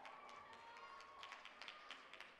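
Near silence: a few faint scattered clicks and taps, with a faint thin held tone in the background.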